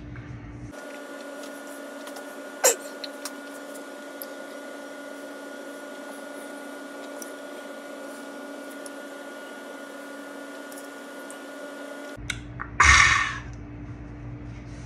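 Steady hum with a few fixed tones, like a room appliance running. There is a single sharp click about three seconds in and a short, loud breathy burst near the end.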